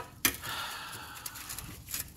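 A person's long, soft breath out, lasting about a second and a half, with a sharp click just before it.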